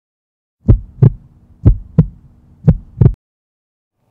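Heartbeat sound effect: three double thumps (lub-dub), about one a second, starting just under a second in and stopping a little after three seconds, with silence around them.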